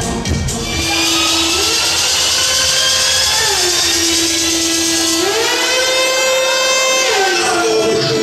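Electronic dance music played by a DJ over a club sound system, in a breakdown where the drums drop away: a buzzy synth line slides back and forth between two notes while rising sweeps build above it.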